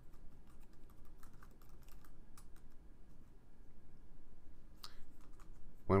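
Typing on a computer keyboard: a quick run of key clicks, a sparser stretch, then a couple more keystrokes near the end.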